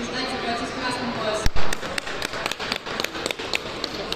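Background voices, then a loud thump about a second and a half in, followed by a quick, irregular run of sharp taps and slaps as a children's hand-to-hand combat bout gets under way: footwork on the mat and gloved strikes.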